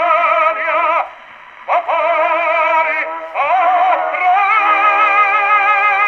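Operatic tenor singing with strong vibrato on a 1918 acoustic 78 rpm record, played back through a Victor V horn gramophone, with a thin, narrow sound and no high treble. The phrases break off briefly about a second in and again about three seconds in, then the voice holds one long note to the end.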